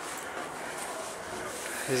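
Steady, quiet outdoor background hiss with no distinct events. A man's voice starts right at the end.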